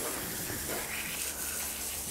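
Hose spraying water steadily onto a horse's muddy legs and hooves, splattering on the perforated floor mat.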